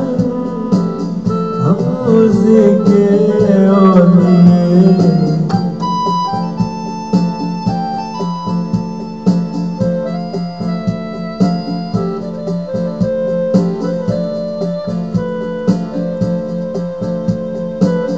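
Instrumental interlude of a Hindi pop song: an electronic keyboard plays organ-like held chords and a melody over a light steady beat. Wavering, gliding notes in the first few seconds trail off as the interlude settles.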